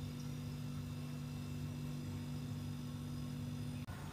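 Steady low electrical hum with a faint hiss, which cuts off with a slight click just before the end.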